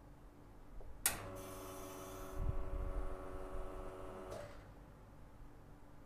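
Nuova Simonelli Appia Life espresso machine backflushing with detergent through a blind filter: a click as the group button is pressed about a second in, then the pump runs with a steady hum for about three seconds, with a low rush of water partway through, before it is switched off.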